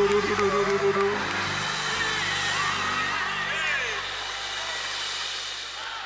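Church band's keyboard holding a chord in G for about the first second, under a congregation shouting and calling out; the crowd noise thins out after about four seconds.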